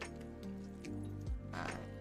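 Soft background music with sustained notes, with a few faint clicks and a brief scratchy rustle of small objects being handled about one and a half seconds in.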